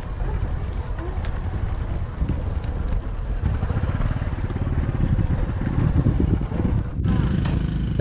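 Motorbike engine running while riding over a rough, rocky dirt track, with wind rumbling on the microphone. The sound drops out briefly about seven seconds in.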